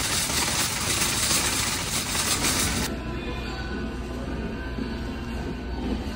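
Plastic shopping cart rolling and rattling over asphalt. After about three seconds it cuts off abruptly and gives way to quieter background music over a low rumble.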